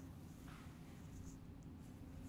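Near silence: faint rustling of a body and clothing shifting on a yoga mat as the legs are brought back to centre, over a low room hum.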